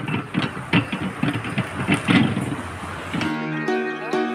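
Roadside street noise with irregular clatter, cut off about three seconds in by background music of plucked, guitar-like notes.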